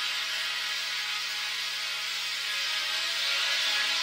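Techno music in a beatless breakdown: a steady wash of synth noise and held tones with no kick drum or bass, growing louder toward the end as it builds.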